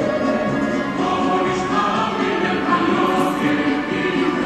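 A choir of many voices singing together in sustained, overlapping lines.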